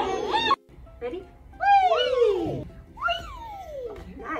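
Voices doing vocal-play glides, long 'wee'/'whoo' sounds that slide in pitch. After an abrupt break just after the start, there are two clear downward slides, one about one and a half seconds in and another about three seconds in.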